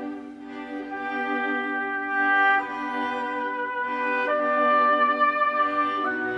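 Orchestral string section, violins, cellos and double bass, holding sustained bowed chords that move to new harmonies twice, about two and a half and four seconds in, gradually growing louder.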